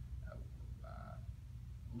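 A man's short hesitation sound, "uh", about a second in, over a steady low room hum.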